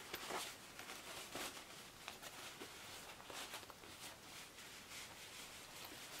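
Faint rustling and light scattered ticks of a fabric zippered pouch being handled and turned right side out.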